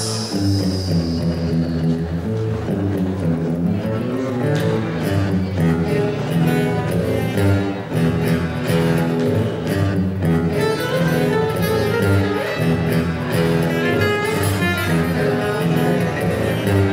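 Acoustic guitar played solo in an instrumental passage, a steady run of plucked notes and chords ringing.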